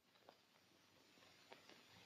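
Near silence: the faint steady hiss of an old film soundtrack, with a few tiny clicks.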